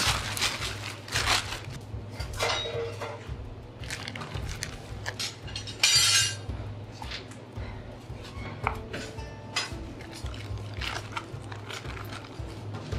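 A plastic bag rustling as a lump of natural clay is taken out, then hands pressing and working the clay onto a plywood board, with irregular short handling noises. A louder rustle comes about six seconds in.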